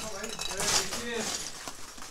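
Footsteps crunching on icy snow, with faint voices in the background.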